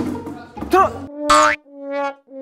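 Comic sound-effect music edited in to mark a missed throw: a boing-like cue, then held brass-like notes of one pitch, repeated with short gaps from a little after a second in. A voice gives a short exclamation just before.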